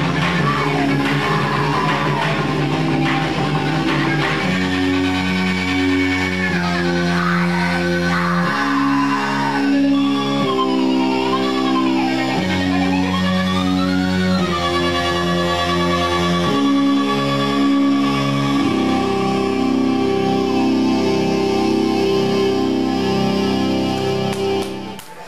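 A live noise-rock band playing loud, sustained amplified chords that shift every second or two, with a high wavering tone gliding up and down above them.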